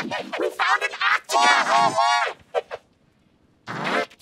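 A man's voice, pitch-shifted and layered into several pitches at once in a 'G Major' edit, speaking in short bursts, with one drawn-out word about a second and a half in. It falls to near silence about three quarters of the way through, and sound returns just before the end.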